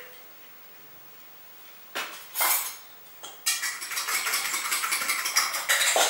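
An egg being beaten with a metal utensil in a stainless steel bowl: a fast, steady run of clinks against the bowl starting about halfway through, after a brief clatter near two seconds in.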